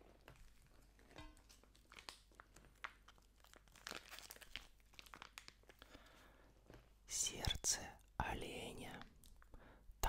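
Clear plastic food packaging crinkling as it is picked up and handled, in two louder bursts over the last three seconds, after faint clicks and taps of things being handled on the table.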